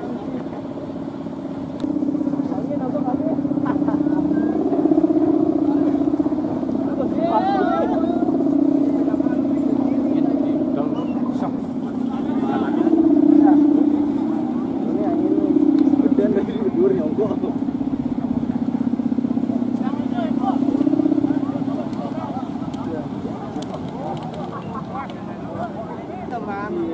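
A big Balinese kite's guangan (bow hummer) droning in the wind, a steady low hum that comes in about two seconds in and wavers up and down in pitch and loudness. It eases off near the end. Voices call out briefly over it.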